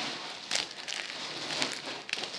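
Foil trading-card pack crinkling and rustling as it is handled and pulled at to tear it open, with a few sharp crackles.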